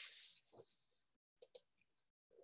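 Near silence, with a short hiss at the very start and two quick computer-mouse clicks about one and a half seconds in that advance the presentation slide.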